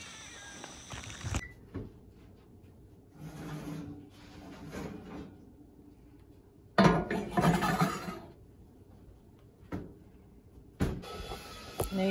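Bakeware being handled at a kitchen stove: a baking dish taken out of the oven and set down on the stove, with the loudest clatter about seven seconds in and a few sharp knocks near the end.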